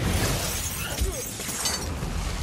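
Film sound effects of a glass display case shattering and crackling as it bursts in an energy blast, over a deep rumble.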